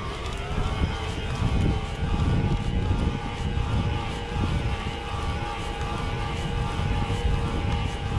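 A mountain bike riding along a paved road, with a steady mechanical whine that rises slightly at first and then holds. Wind rumbles over the microphone underneath it.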